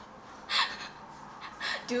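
Breathy, laughing gasps from a girl: a short burst about half a second in and another about a second and a half in, just before she starts to speak.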